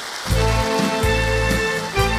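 Live band playing an instrumental passage between sung lines, with no voice. Held melody notes sound over a bass line that comes back in about a third of a second in.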